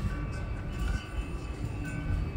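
Marching band playing a soft passage of held, sustained chords over a low, uneven rumble.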